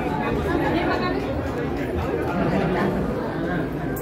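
Dense crowd chatter: many people talking at once in a packed, jostling crowd, with a steady level and no single voice standing out.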